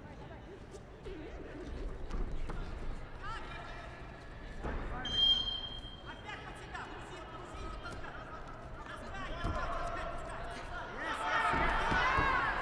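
Coaches shouting to the wrestlers during a freestyle bout, in bursts that grow loudest near the end, with a short steady whistle blast about five seconds in.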